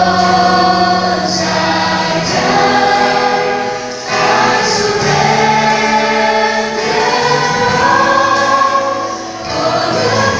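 Live worship band performing a song: mixed male and female voices singing long held notes over drums, bass and guitar, with short breaks between phrases.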